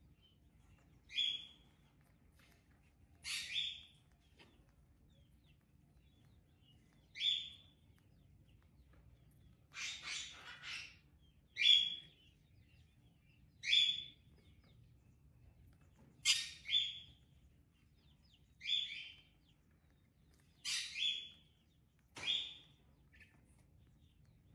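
Sparrow nestling chirping: about ten short, high chirps a second or two apart, some in quick pairs.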